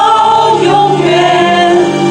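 A church congregation singing a worship hymn together, with sustained notes that move from pitch to pitch.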